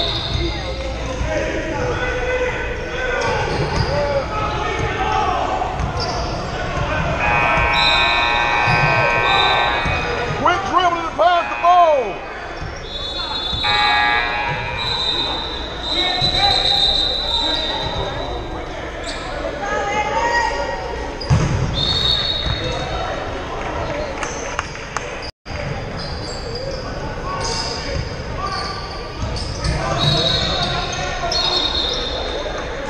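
Basketball game in a gym: the ball bouncing on the hardwood floor and sneakers squeaking, with players' and spectators' voices. Everything echoes in the large hall.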